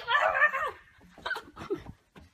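A dog whimpering and yipping: one long wavering whine, then a couple of short yips.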